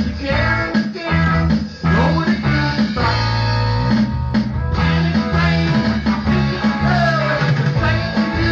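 Live rock band playing loudly, electric guitar to the fore over a bass guitar, with a singer at the microphone.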